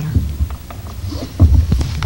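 Handling noise from a gooseneck desk microphone being touched and adjusted: low, dull thumps and small knocks, the loudest about one and a half seconds in.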